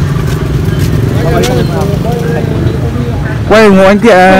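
Men talking over a steady low rumble, with a louder voice speaking up close near the end.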